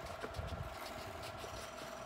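Quiet room tone with a faint steady hum and a soft low bump about half a second in, as a paper worksheet is handled close to the microphone.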